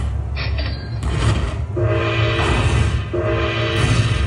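Dragon Link slot machine counting up its bonus win: electronic slot music and tally sounds as the win meter climbs, with a chord of held tones that starts about halfway in and restarts near the end.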